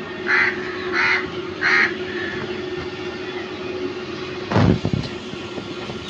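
A bird calling three times, harsh calls about two-thirds of a second apart, over a steady low hum. About four and a half seconds in there is a single loud thump.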